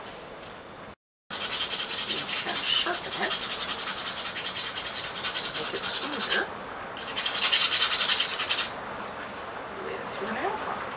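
A household nail file rasping back and forth over the tip of a steel nail in quick, even strokes, sharpening its rough point into an awl tip. A run of about five seconds starts about a second in, then after a pause comes a second, louder run of about two seconds.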